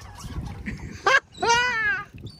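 A person laughing: a short burst about a second in, then one drawn-out, high-pitched laugh that rises and then falls in pitch.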